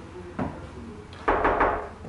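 Knocking on a closed apartment door: one knock about half a second in, then a quick run of loud blows near the end.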